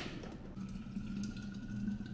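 A sharp click as a just-boiled glass electric kettle is lifted off its base, then a faint steady tone that rises slightly in pitch over a low hum, as the kettle and a thermos airpot are handled.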